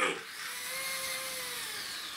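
Servo motors of a homemade 3D-printed T-800 robot whining as it moves its arms and torso, one steady motor whine whose pitch rises slightly and falls back.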